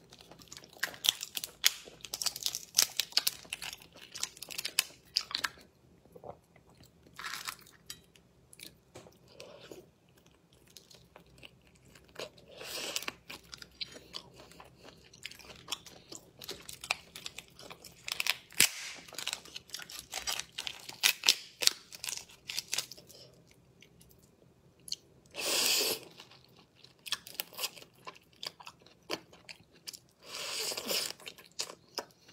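Langoustine shells crackling and snapping as they are twisted and peeled apart by hand, in bursts of quick clicks, with biting and chewing of the tail meat. The langoustines are not fully thawed, so the meat is hard to pull out of the shell. Two longer rustling bursts come about halfway through and a few seconds before the end.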